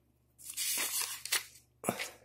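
Handling noise from the recording phone being moved: a rasping rustle about a second long, with a couple of sharp clicks near its end.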